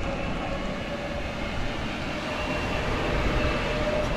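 Tourist road train (a small tractor unit pulling open passenger carriages) driving up and approaching close, its motor running with a faint steady whine over road noise.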